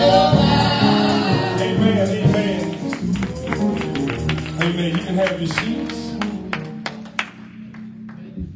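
Live gospel music from a church band, drum kit and keyboard, with a man singing into a microphone, winding down and getting quieter. The drums stop about seven seconds in, leaving a held keyboard chord.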